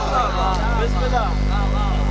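A man reciting in a melodic, chant-like voice through a public-address system, over a steady low hum.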